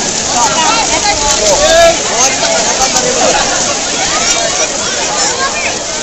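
A crowd of children, many overlapping voices shouting and chattering at once.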